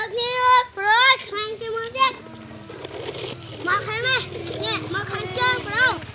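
Children's high-pitched voices, talking and calling out in quick rising and falling phrases, loudest in the first two seconds and again near the end, over a faint low steady hum.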